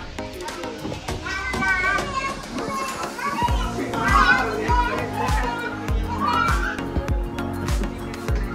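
Young children's high voices calling out and chattering as they play, over background music whose steady low beat comes in about three and a half seconds in.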